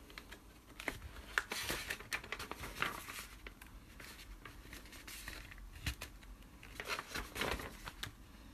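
Pages of an old paper fanzine being handled and turned: irregular, dry paper rustles and crinkles.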